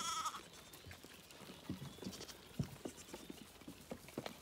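A newborn lamb bleats once, a short, high, wavering call right at the start, followed by faint scattered rustles and light clicks.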